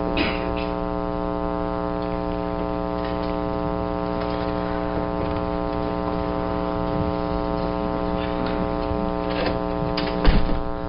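Steady electrical buzz with many overtones, the mains hum of an audio line. A couple of faint knocks come through, one near the start and one near the end.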